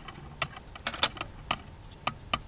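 A £2 coin running down a length of plastic electrical trunking, making a series of sharp, irregular metallic clicks and clinks as it knocks against the plastic.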